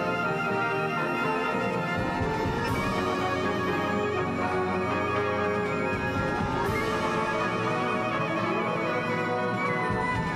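Symphonic wind band playing a concert piece: clarinets, saxophones, brass and marimba in sustained chords that shift every few seconds.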